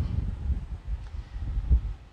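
Low, uneven rumble of wind noise on the microphone, dying away near the end.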